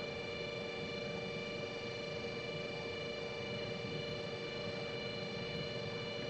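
Steady electrical hum and hiss, with several constant tones and no other sound.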